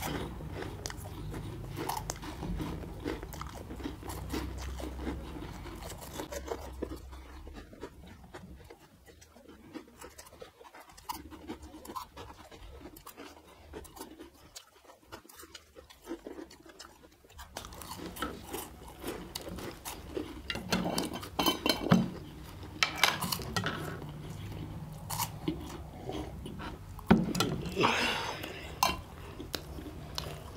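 Two people chewing and crunching mouthfuls of crisp cheese ball snacks, with many small crackling bites. It goes quieter for several seconds in the middle, then the crunching picks up again and gets louder.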